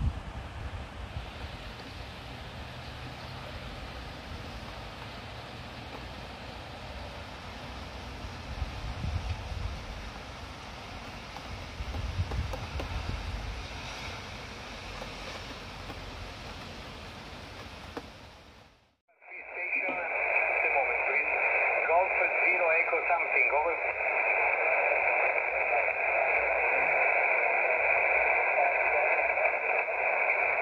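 For the first two-thirds, steady wind noise with a low rumble. Then, after a short break, a Xiegu X5105 shortwave transceiver's loudspeaker receiving single-sideband: band-limited static with a steady high whistle and a weak voice in it.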